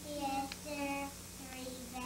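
A young girl singing a simple tune, held notes stepping up and down in pitch, over a steady low hum.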